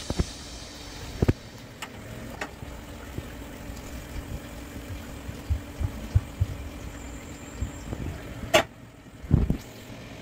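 A nonstick frying pan knocked and scraped as scrambled eggs are tipped out of it onto a paper plate, a few sharp knocks scattered through and the loudest near the end, over a steady low background hum.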